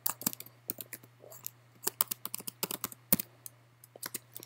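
Typing on a computer keyboard: a quick, irregular run of key clicks, with one louder click about three seconds in.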